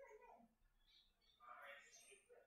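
Near silence: room tone, with a faint brief sound shortly after the start and another near the end.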